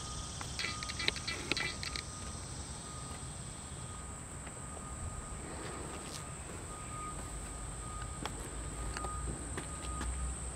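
Outdoor ambience with a steady high insect drone, like crickets, over a low rumble, and a few short chirps in the first two seconds.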